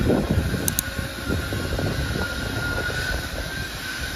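Outdoor ambience: an irregular low rumble, typical of wind buffeting the microphone, with a steady high-pitched whine running through it.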